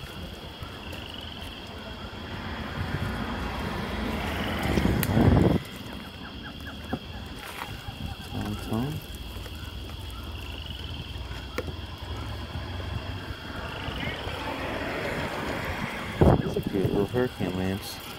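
Wind buffeting the microphone outdoors: a steady low rumble that twice swells over a few seconds and then stops suddenly, with snatches of other people's voices in the background.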